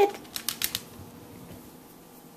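A small dog's toenails clicking on a hard tile floor: a quick run of sharp clicks in the first second, then quiet.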